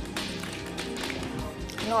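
Soft, steady background music, with a few light taps and clicks from a small plastic test-kit package being handled close to a lapel microphone.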